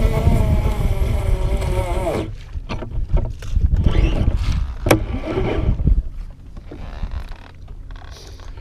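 Wind buffeting the microphone on a boat on open water. For about the first two seconds a steady whine with many overtones runs, then slides down in pitch and stops; a single sharp click comes about five seconds in.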